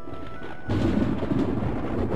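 Music gives way, about two-thirds of a second in, to wind buffeting an outdoor microphone: a loud rushing noise with an uneven low rumble.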